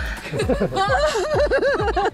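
A woman laughing in a quick string of short, high-pitched bursts, over background music with a steady low beat.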